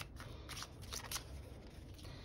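A tarot deck being shuffled by hand: a quiet run of soft, irregular card flicks and taps.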